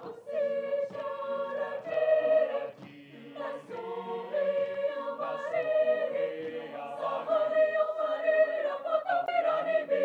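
Mixed choir singing a folk-song arrangement in several parts, with short breaks between phrases and a brief dip about three seconds in.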